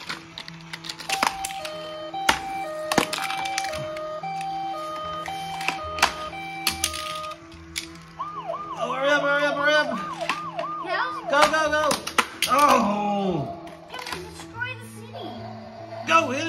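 Electronic toy sound effects: a two-tone hi-lo siren for about seven seconds, then a fast warbling electronic figure and a few falling glides. Sharp plastic clicks of toy cars and track pieces sound throughout.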